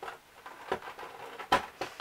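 Scattered clicks and taps of fingers working at a cardboard advent calendar door while pushing a tiny brush out from the back. The loudest tap comes about one and a half seconds in.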